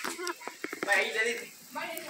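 A man speaking briefly in Spanish, with a few light taps or clicks between his words.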